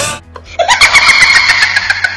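A group of people laughing loudly together in rapid bursts, starting about half a second in, over background music.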